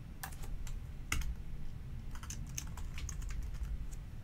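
Computer keyboard typing: a few keystrokes at first, a louder key about a second in, then a quick run of keystrokes in the second half, over a steady low hum.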